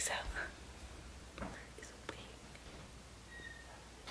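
A woman's breathy, whispered "so" at the start, then a quiet pause with only faint breath and small sounds.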